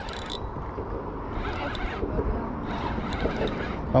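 Wind rumbling on the microphone, with faint scattered clicks from a spinning fishing reel while a large hooked fish is being fought on the rod.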